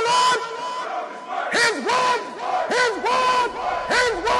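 A group of voices shouting in unison: a string of short rising-and-falling calls, several a second, over a steady held tone.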